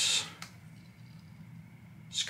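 A single light click from handling a Sony a7C camera as its vari-angle screen is swung out, followed by quiet room tone.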